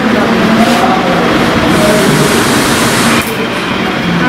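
Indistinct chatter of several overlapping voices over a steady noisy background, with no one voice standing out.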